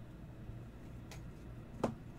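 Two short clicks of hard plastic card holders knocking against each other and the table as they are handled and set down, the second one, near the end, louder. A steady low hum runs underneath.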